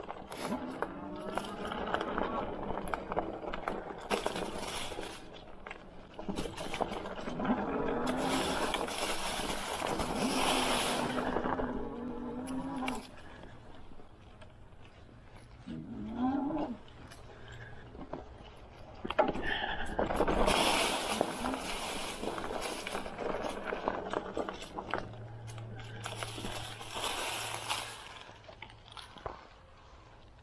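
Dirwin Pioneer 26x4 fat-tire e-bike being ridden over sticks, roots and leaf litter: tyres rolling and crunching through the leaves, the noise swelling and fading in stretches of a few seconds.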